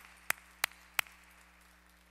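A man clapping his hands close to the microphone in an even rhythm of about three claps a second; four claps, stopping about a second in.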